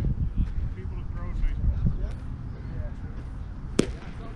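Low rumble of wind on the microphone, strongest in a gust at the start, with faint distant voices and one sharp crack a little before the end.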